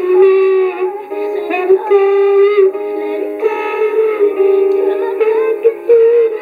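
A young girl singing into a toy karaoke machine's corded microphone, her voice amplified through the machine, in long held notes that slide up and down in pitch.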